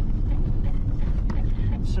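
Steady low rumble of a 4x4 evacuation vehicle on the move, heard from inside its rear cabin.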